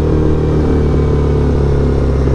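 Sportbike engine running steadily at a light cruise, about 35 mph.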